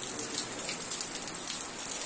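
Steady rain falling onto waterlogged ground, an even hiss with no break.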